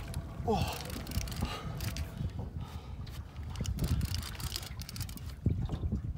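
A man straining against a heavy fish on a rod lets out a falling 'ohh' groan about half a second in, over steady wind rumble on the microphone and scattered small clicks.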